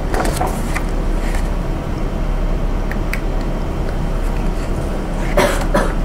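Steady background hiss of a lecture-room recording with a constant low mains hum, a few faint clicks, and a short breathy burst near the end.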